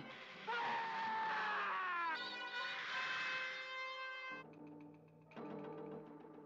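Dramatic film score from a 1960s science-fiction movie: a tone gliding down in pitch, then a sustained chord that breaks off suddenly about four seconds in, followed by a quieter low steady hum.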